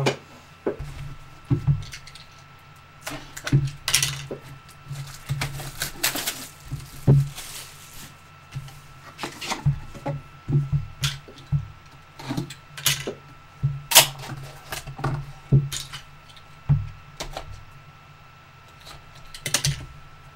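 A cardboard trading-card box being handled and opened by hand: irregular taps, knocks and scrapes of cardboard, several each second at times, over a steady low hum.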